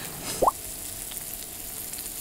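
Asparagus spears sizzling steadily in butter on a hot iron griddle, with one short rising pop about half a second in.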